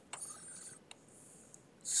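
A quiet lull holding two faint clicks, about a second apart, and a soft high hiss.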